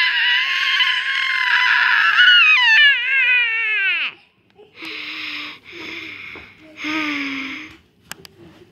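A child's high-pitched play-acted crying wail, held for about four seconds, wavering and then falling away. It is followed by three short, breathy strained vocal bursts.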